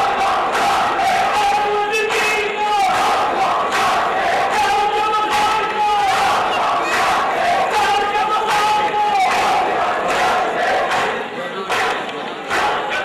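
Men's voices chanting a noha in long held notes over a crowd beating their chests in matam, a steady run of hand slaps under the chant.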